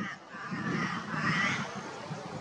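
A harsh, drawn-out bird call lasting over a second, over low wind rumble on the microphone.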